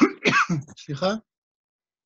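A man clearing his throat for about a second, then no sound.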